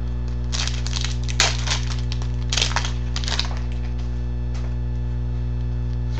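Hockey trading cards rustling and snapping against each other as they are flipped through by hand, in several short bursts in the first half or so. A steady electrical hum runs underneath.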